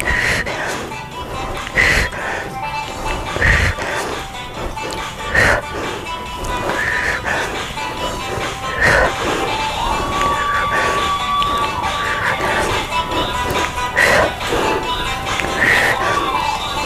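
Background music with a regular beat; a single melody note is held for about two seconds past the middle.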